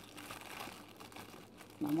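Faint crinkling and rustling of thin plastic wrapping being handled.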